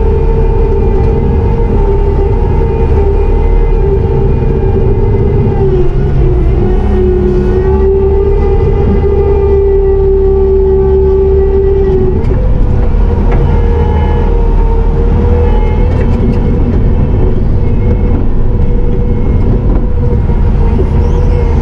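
Bobcat T650 compact track loader's diesel engine and hydraulics running hard, heard from inside the cab: a loud steady drone with a whine on top. The pitch sags for several seconds in the middle as the bucket pushes a load of dirt, then comes back up.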